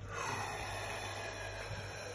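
A man breathing out hard in an ice bath: one long hissing exhale that starts sharply and fades over about two seconds, his breathing against the cold.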